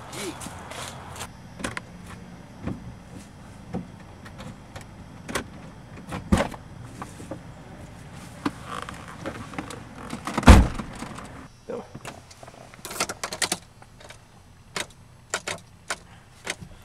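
Jeep SUV door being opened and shut, with keys jangling and scattered clicks and knocks. There is a heavy door slam about ten and a half seconds in, and sharp clicks near the end as the ignition key is turned.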